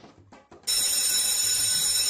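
Electric school bell ringing: a loud, steady, high-pitched ring that starts suddenly about two-thirds of a second in. It is the bell for the end of school.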